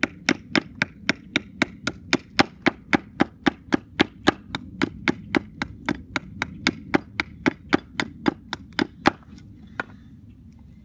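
Hatchet hewing a wooden spoon blank braced on a wooden chopping block: short, quick chops at about four strokes a second, in a steady rhythm. The chopping stops about a second before the end.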